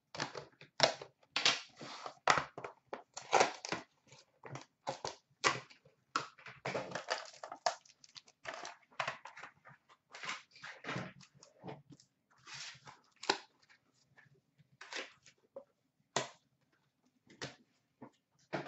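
A 2012-13 Panini Prime hockey card box being unwrapped and opened by hand: plastic wrapper crinkling and tearing, cardboard box opening and the foil-wrapped pack being lifted out, in irregular rustling bursts.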